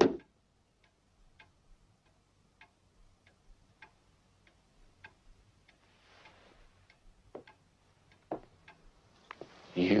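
A dart strikes the dartboard at the very start. A clock then ticks faintly and steadily in a hushed room, with a couple of louder knocks near the end.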